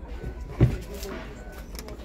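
A single dull thud a little over half a second in, as the carpeted trunk floor panel of a sedan is let drop. Behind it are a low rumble and faint voices.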